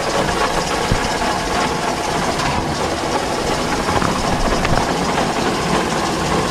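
A motor running steadily, an even mechanical noise with no change in pitch or level.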